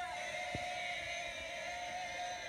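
A woman singing one long held note, steady in pitch.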